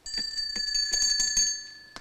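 A small bell ringing with a high, lingering tone that fades toward the end.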